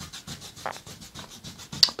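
Bristle brush scrubbing white oil paint onto canvas in quick repeated strokes, a dry rubbing scratch.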